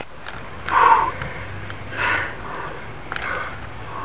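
Men breathing hard, out of breath: three heavy breaths about a second apart, the first the loudest.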